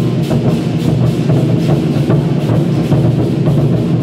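Chinese war-drum ensemble playing loudly: several large barrel drums struck with sticks together in a fast, dense, unbroken rhythm.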